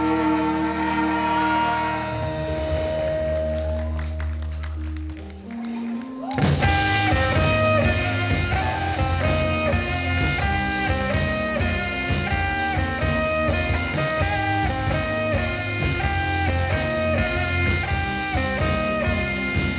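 Live indie rock band playing on stage: held guitar and bass notes ring out for about five seconds and thin out briefly. Then the full band comes in with drums and a repeating guitar riff.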